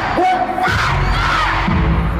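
Loud live pop music from an arena concert, heard from the audience, with a heavy low beat and a repeating pitched figure about every half second to second, and crowd noise underneath.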